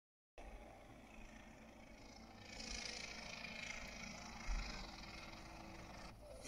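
Steady drone of an airship's engines from a film soundtrack, played from a screen and picked up off the room by a phone, swelling slightly in the middle. A single low thump a little past the halfway point.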